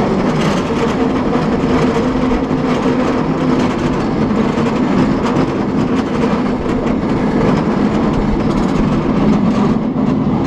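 A San Francisco cable car riding along its track, a steady rumble and rattle of the car with a continuous hum beneath.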